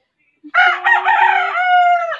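A rooster crowing once, loud and close, starting about half a second in with a long held final note that drops off at the end.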